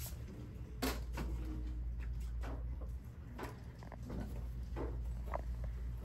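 Hand-pump water spray bottle spritzing a mannequin's hair, one sharp squirt about a second in, followed by a few fainter ticks and rustles as the wet hair is handled. A steady low hum runs underneath.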